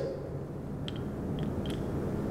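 Lecture-room tone during a pause: a steady low hum, with three or four faint, short ticks about a second in.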